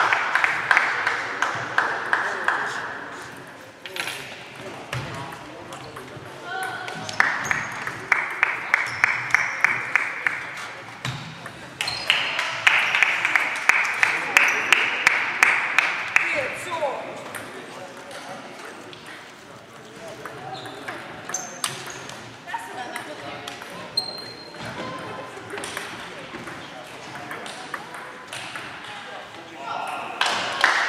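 Table tennis balls clicking off bats and the table in rallies. The clicks come in quick runs, loudest near the start and from about seven to sixteen seconds in, and are sparser and quieter after that.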